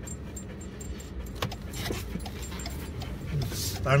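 A dog panting continuously inside a moving car's cabin, over the steady low hum of the car driving.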